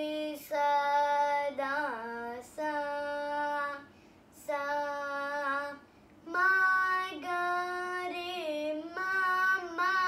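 A young girl singing solo and unaccompanied: long held notes with gliding, ornamented turns, in phrases broken by brief pauses for breath, the phrases after the middle pitched higher.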